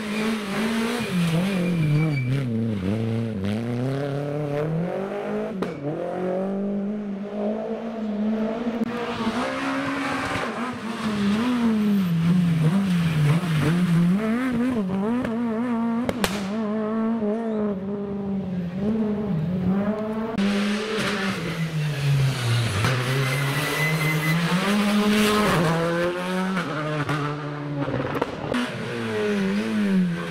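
Rally cars passing one after another on a tarmac stage, each engine revving hard through the gears and backing off for the bends, so the pitch climbs and drops over and over.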